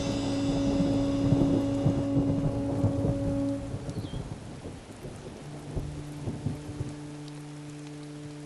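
Thunder rumbling under a held low music note for about the first three and a half seconds, then dying away into a softer hiss of steady rain. A new low sustained note comes in about five and a half seconds in.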